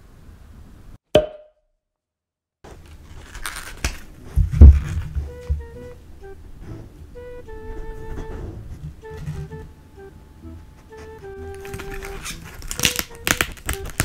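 Light background music with a simple melody of held notes, starting after a short blip and a moment of dead silence. Over it come close-miked sounds: one heavy thump as celery stalks are set down on a wooden board, and near the end a Samoyed sniffing loudly at the celery right at the microphone.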